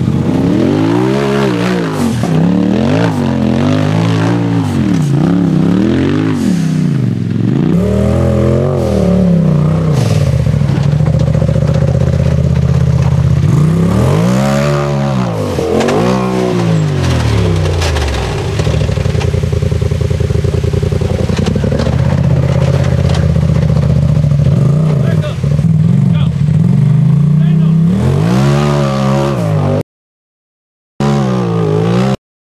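Off-road vehicle engines revving in repeated throttle bursts, each rising and falling in pitch, with stretches of steady high running between, as a tube-frame buggy and then a Polaris RZR claw their way up rock ledges.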